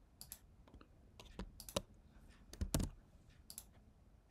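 Irregular clicks and key taps of a computer mouse and keyboard, about a dozen short, sharp ones, with a heavier pair near the middle.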